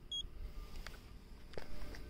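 A paint thickness gauge gives one short, high electronic beep just after its probe is pressed onto a car bonnet, signalling a completed reading. A few faint clicks follow.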